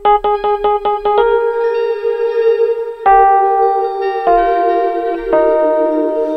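Roland Fantom playing its Tine Mk II tremolo electric piano tone layered with a pad. It opens with a quick run of about eight repeated chord stabs, then holds sustained chords that change three times.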